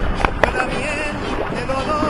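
A large golden dorado thrashing and splashing in shallow water as it is held up by the jaw, with two sharp splashes in the first half second over rough, continuous water noise. Background music plays faintly underneath.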